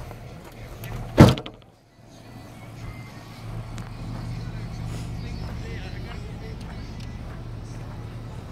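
Trunk lid of a 2014 Honda Accord shut about a second in, one loud thud. A steady low hum follows.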